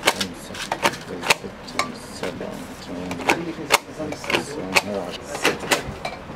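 A self-inking rubber stamp being pressed down again and again onto envelopes on a glass-topped table: around ten sharp clacks at uneven intervals, roughly two a second.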